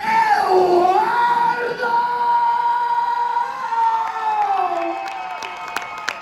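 A man singing through a PA microphone, holding one long, high wailing note that slides downward near the end, with a crowd cheering beneath it. Scattered clapping starts toward the end.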